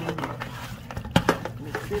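Bare hands mixing raw pork chops in yellow mustard and seasoning in a plastic bowl, with a few short sharp smacks, the loudest just over a second in.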